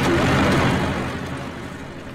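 A cartoon farm tractor's engine running as it drives past. The rumble is loudest at first, then fades.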